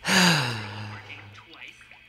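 A man's breathy sigh, a drawn-out "ahh" that falls in pitch and fades over about a second.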